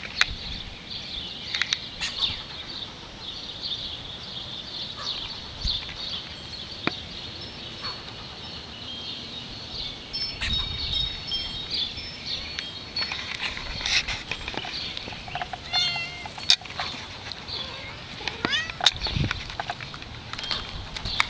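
Squirrel chattering in quick runs of short, high calls. A cat meows about three-quarters of the way in.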